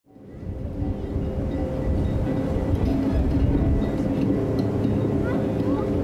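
Beach ambience fading in from silence over the first second: a steady low rumble of wind and surf under faint distant voices, with a couple of short rising chirps about five seconds in.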